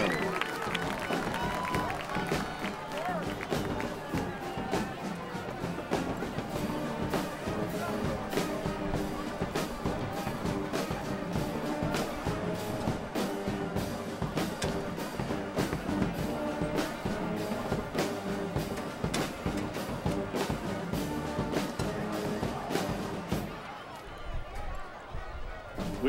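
Brass band music with drums keeping a steady beat; it drops away a couple of seconds before the end.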